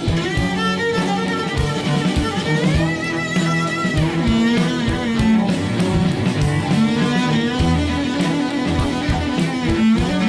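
A trio of cellos, the middle one an electric cello, playing an upbeat piece together: a bowed melody over low bowed parts, with sharp rhythmic accents throughout and a slide up in pitch about three seconds in.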